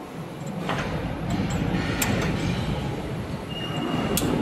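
Metal clinks and scraping as spacers and roller parts are handled on the shafts of a roll forming machine, over a steady low rumble, with a couple of sharp clicks and a thin high tone coming in near the end.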